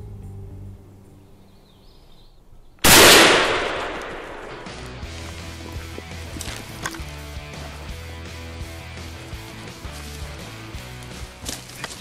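A single shotgun shot at a wild turkey, about three seconds in, loud and sudden, dying away over about a second.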